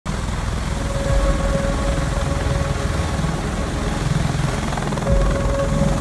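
V-22 Osprey tiltrotor and helicopters running on a ship's flight deck: a loud, steady rotor and turbine noise with fast low thudding from the blades and a whine that comes and goes.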